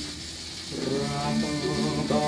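An old shellac 78 record of a Thai dance-band song playing on a vintage record changer, with steady surface hiss. After a brief lull in the band's introduction, a wavering melodic line comes in less than a second in and swells.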